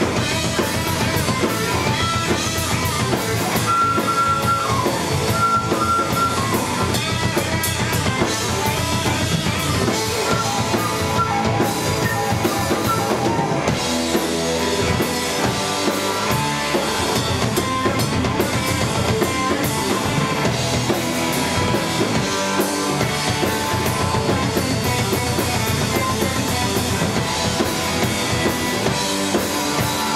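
Live rock band playing: drum kit, electric guitars and bass guitar. A flute plays held high notes over the band in the first few seconds.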